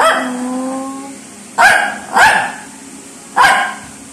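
A small Shih Tzu barking sharply four times: once at the start, twice in quick succession in the middle, and once near the end. These are demand barks, begging for bread.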